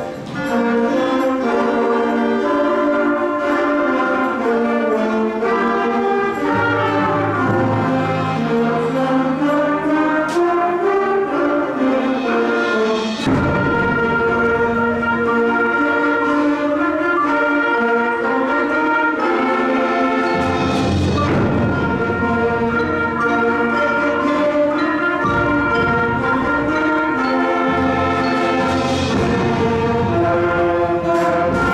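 A middle-school concert band playing, led by brass holding full chords. Low brass comes in partway through, with a few sharp percussion strikes around 10 and 13 seconds in.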